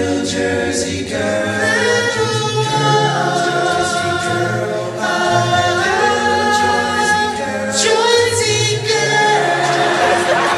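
All-male a cappella vocal group singing live in close harmony, with no instruments: held chords that change every second or so over a low sung bass line.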